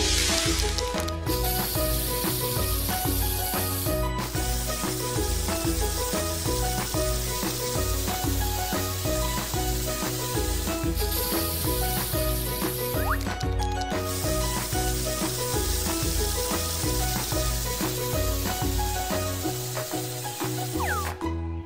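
Cartoon spray-paint can hissing over upbeat background music with a steady beat. The hiss comes in stronger bursts, one starting about a second in and lasting about three seconds, another a little past the middle.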